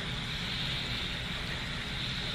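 Steady background room noise: an even hiss with a low rumble, with no distinct events.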